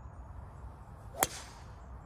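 A golf club striking a ball off the tee: one sharp crack about a second in.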